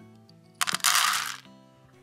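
Dry cat food poured from a glass jar into a dish: one short rattling rush starting just over half a second in and lasting under a second, over soft background music.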